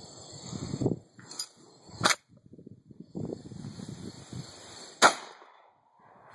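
Two sharp metallic clicks from a UTS-15 bullpup shotgun, about three seconds apart, the second louder with a short ring after it, as the trigger is pulled and the action worked. The gun is misfiring: the rounds get no primer strike.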